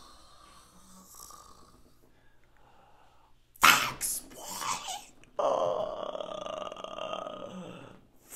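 A man's wordless vocal reaction: a sharp, breathy outburst like a laugh or gasp about halfway in, then a long drawn-out exclamation held for about two and a half seconds.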